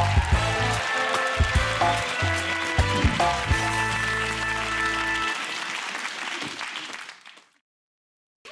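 Theme music of a TV show's break bumper, with held notes over a bass line, playing over studio audience applause. It fades out about seven seconds in, leaving silence.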